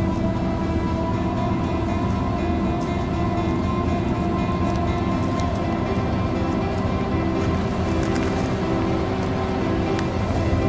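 Background music with sustained, held tones at an even level.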